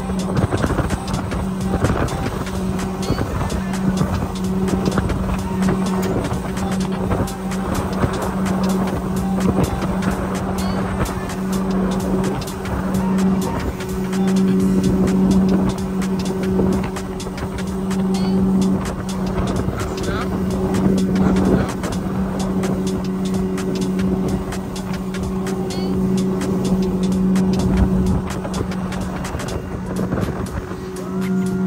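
A 90 hp outboard motor running steadily at speed while towing, its engine note holding with slight swells, over the rush of the boat's wake and wind noise.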